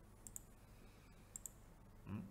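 Two faint computer mouse clicks about a second apart, each a quick double tick, in near silence.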